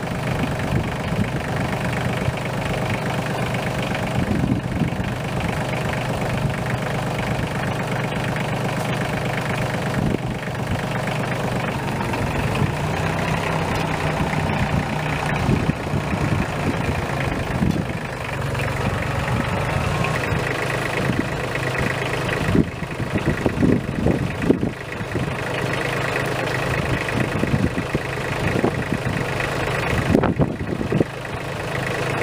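An engine running steadily at idle, with a few sharp knocks about three quarters of the way through.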